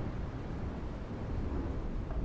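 Steady low rumbling noise, like rough sea or thunder: an intro sound effect with no distinct notes.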